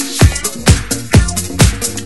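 Electronic dance music in a house/disco style, with a steady four-on-the-floor kick drum at about two beats a second. The bass drops out briefly at the very start.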